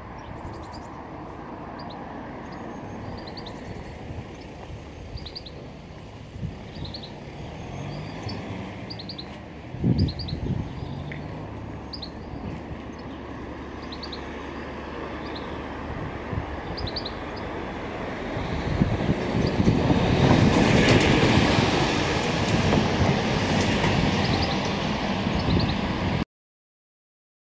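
Roadside outdoor ambience: a steady rumble of traffic that swells much louder over the last several seconds, as a vehicle passes. Short high bird chirps repeat through the first part, and there is a brief thump about ten seconds in.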